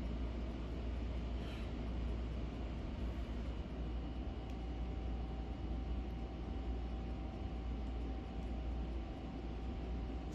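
Steady low indoor background hum with no distinct events, and a faint steady whine joining about four seconds in.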